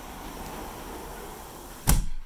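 Steady noise of road traffic passing below, then near the end a single loud thud of a glass door shutting, which cuts the traffic noise down.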